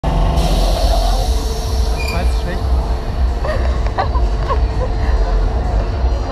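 Fairground background noise: a steady, loud low rumble with faint distant voices and a few short high squeals.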